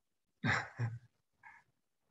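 A man's short breathy vocal sounds over a call microphone: three quick puffs of breath with a little voice in them, two close together about half a second in and a softer one near the end.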